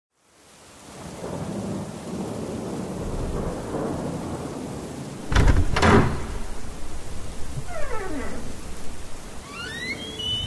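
Steady rain and thunder, fading in over the first second, with a loud thunderclap about five seconds in. Near the end come a falling swept tone and then rising ones.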